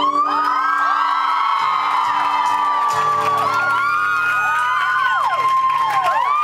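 Audience cheering and whistling at the end of an acoustic guitar song: the strumming stops right at the start, and many high whistles glide up and down over the cheers.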